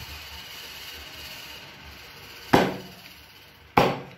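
Knife chopping through eel onto a thick wooden chopping block: two sharp chops a little over a second apart in the second half.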